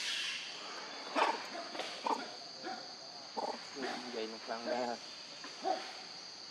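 A steady high insect drone runs underneath. Over it come a series of short vocal calls with a clear pitch, a few scattered through the first half and a quick cluster of them a little past the middle.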